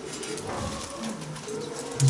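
A dove cooing softly, a few low notes.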